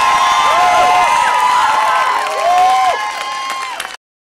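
Crowd cheering, whooping and clapping. It grows quieter near the end and cuts off abruptly.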